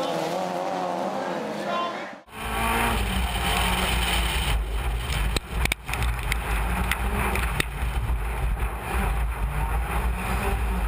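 Racing cars heard from trackside, then an abrupt cut to the in-car sound of a Lancia Delta Integrale rallycross car at speed. Its engine and drivetrain give a heavy, steady low rumble, with a few sharp clicks on the loose surface.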